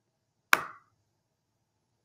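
A single short, sharp click about half a second in, fading within a quarter second, with near silence around it.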